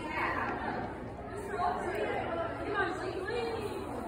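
Indistinct chatter of voices, with no clear words.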